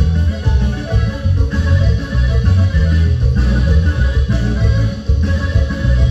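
Live band playing an instrumental dance passage, with guitar over a loud, rhythmic bass line and no singing.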